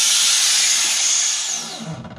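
A loud, steady hiss, fading near the end with a brief falling whistle.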